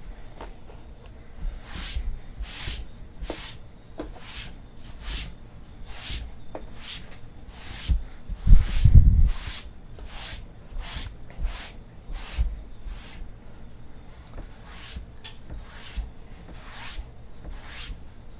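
Hands handling cardboard hobby boxes and cards on a table: a run of short brushing, sliding strokes, about one or two a second, with a heavier knocking thump about halfway through.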